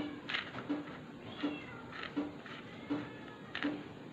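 Cellophane wrapper crinkling as it is pulled off a plastic cassette shell, in short sharp crackles, over a steady repeating low beat. Several high, bending squeals come in the middle.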